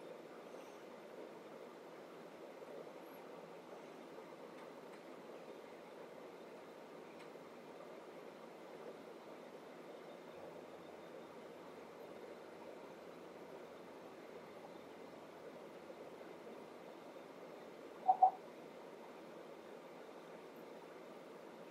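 Faint steady hiss of room tone. Near the end it is broken by two short pitched blips in quick succession.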